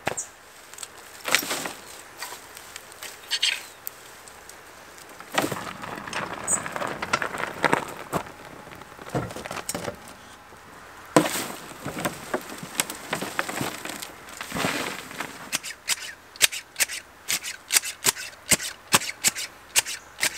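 Chopped garden clippings tipped from a wheelbarrow onto a compost heap and spread with a garden fork: irregular rustling and crunching of twiggy material, then a run of quick scraping strokes about two a second near the end.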